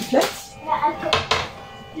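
Two sharp knocks about a second in as groceries are set down and handled on a kitchen counter, with a brief child's voice in the background just before.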